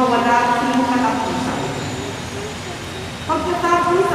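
A woman's voice reading aloud over a microphone, with a short pause in the middle.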